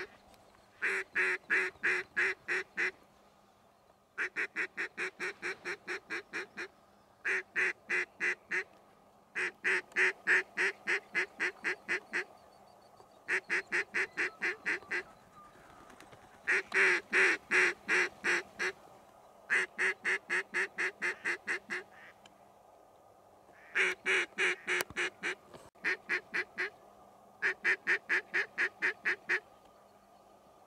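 Mallard duck call being blown in repeated runs of quacks, about five a second, each run lasting one to three seconds with short pauses between.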